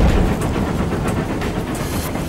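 Steam locomotive running: a loud, heavy rumble with a quick, even beat of about four or five strokes a second.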